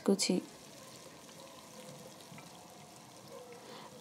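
Sliced onions and bay leaves frying in hot oil in a pot: a faint, steady sizzle.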